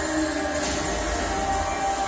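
Soundtrack of a TV action scene playing from a television: sustained music and sound effects, with a brief swooshing sweep about half a second in.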